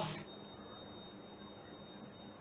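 A man's voice trails off at the very start, then quiet room tone with a faint, steady high-pitched whine.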